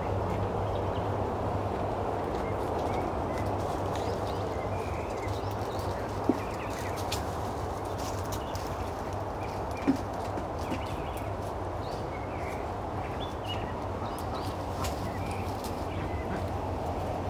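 Steady low hum of honeybees around an open wooden hive, with faint scattered clicks and two short sharp knocks about six and ten seconds in as the hive box is handled.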